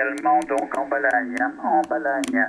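Single-sideband voice received over a Kenwood TS-480HX HF transceiver's speaker, cut off sharply above about 2.5 kHz by the receive DSP filter while its high-cut setting is being changed. The knob's detents click several times a second over the voice.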